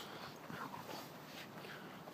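A dog whining faintly in a few short, weak sounds.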